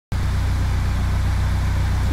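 Nissan Silvia S15's four-cylinder engine idling steadily, an even low pulse.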